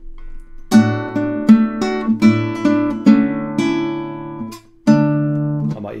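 Nylon-string classical guitar playing a demonstration voicing of a D major chord, chosen for smooth, stepwise voice leading in a cadence. A chord is struck under a second in, with single notes picked over it as it rings. A new chord sounds about five seconds in.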